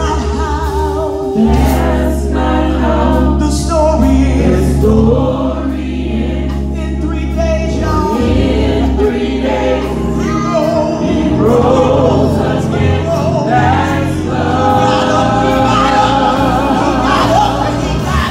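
Gospel worship team singing, a woman's lead voice over a group of backing singers, with instrumental accompaniment and a steady bass line underneath.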